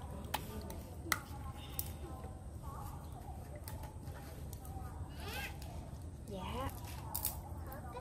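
Cooking oil poured from a plastic bottle into a frying pan over a wood fire, with a few sharp clicks near the start as the bottle is handled and opened. Faint pitched calls sound in the background in the second half.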